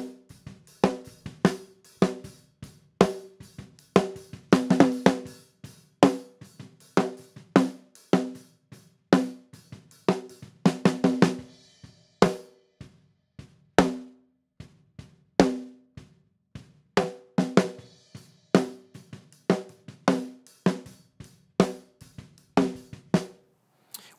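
Close-miked snare drum track playing a drum groove, sharp snare hits with their ringing tone plus bleed from the kick drum and cymbals. An EQ high-pass filter is swept up across it to cut the low end and take out the kick drum bleed.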